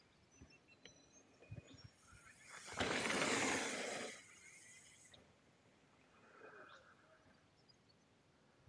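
Mountain bike riding down a dusty dirt trail: scattered small clicks and rattles, with one loud rush of noise about three seconds in that lasts just over a second before fading.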